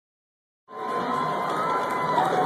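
A crowd of people shouting and cheering, starting suddenly just under a second in.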